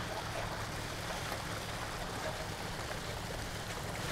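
Water rushing steadily through a small wooden sluice box, carrying gravel, with a steady low hum underneath.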